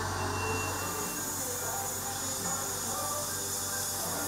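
Dental equipment running with a steady hiss, with a brief high whine near the start that lasts about a second.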